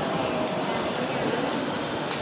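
Steady, even rushing background noise of a mall lobby, with no distinct events.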